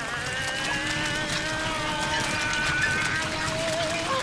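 Countertop electric blender running steadily, blending a fruit smoothie of milk, frozen berries, banana and ice cubes. A long, held, wordless vocal sound wavers over the motor.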